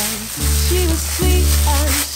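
Raw ground-meat meatball mixture being squished and kneaded by a hand in a plastic glove, a steady crackly, squelching rustle, over background music with a strong bass line.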